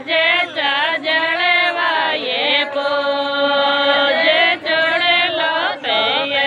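Singing of a Rajasthani Shekhawati jalwa pujan folk song (geet): a melody with gliding ornaments, and a long held note in the middle.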